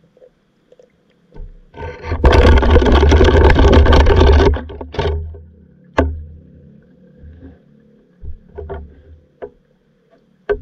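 Underwater camera being jostled and moved: a loud rush of water noise with a deep rumble for about three seconds, then a few scattered knocks and thuds on the housing.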